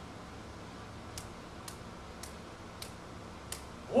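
A few faint, sharp clicks, roughly one every half second, over a low steady room hum; a short spoken 'oh' comes at the very end.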